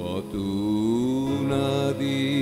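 Male voice singing a long, wordless held note in a Bengali folk song. The note glides upward in pitch just after it starts and is then held with a slight wavering vibrato, over a steady sustained instrumental drone.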